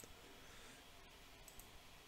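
Near silence: room tone with a few faint computer mouse clicks, one at the start and a couple about a second and a half in.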